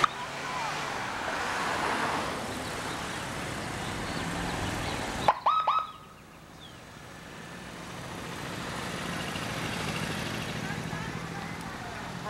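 Outdoor roadside background noise, broken about five seconds in by a short police siren chirp of a few brief tones. The background then rises slowly again.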